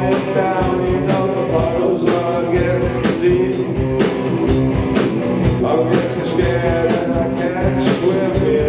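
Live rock band playing with electric guitar, bass guitar and a drum kit keeping a steady beat.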